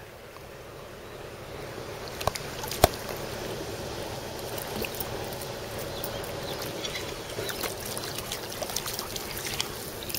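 Steady trickling water with a few sharp clicks about two and three seconds in.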